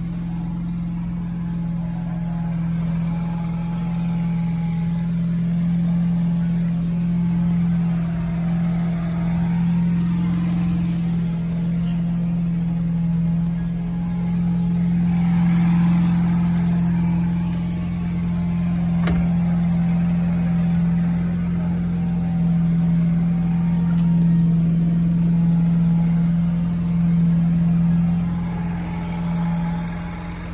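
A motor running steadily with a constant low drone, unchanged in pitch and level throughout.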